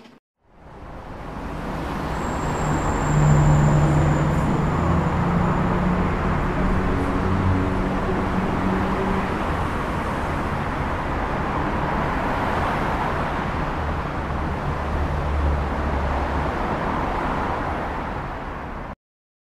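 Motor vehicle running with steady road noise and a low engine hum, fading in over the first few seconds.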